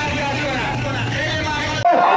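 Many voices of a crowd talking at once over a steady low engine rumble. Near the end the sound cuts off abruptly and switches to louder, closer voices.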